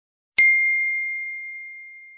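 A single bell-like ding sound effect for a notification bell being clicked, struck about half a second in. It has one clear high tone that rings on and fades slowly.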